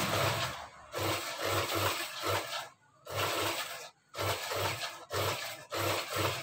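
Cloth rustling and rubbing as hands bunch and turn a sewn garment, in a string of short bursts with brief pauses between.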